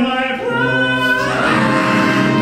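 Singing from a stage musical: long held sung notes, with the music growing fuller about a second and a half in.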